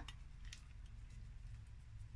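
Faint, soft handling sounds of fingers rubbing seasoning onto raw chicken thighs, with a small tick about half a second in, over a low steady hum.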